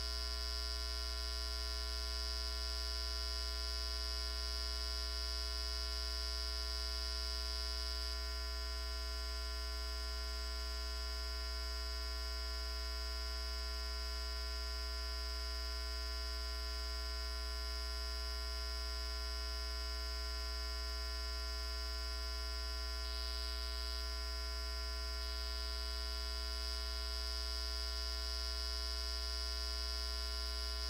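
Steady electrical mains hum with a high-pitched whine from a malfunctioning audio feed, an unchanging set of tones with nothing else in it.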